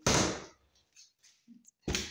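Two sharp knocks, a loud one at the start and another near the end, from kitchen cabinet doors being handled, shut and opened.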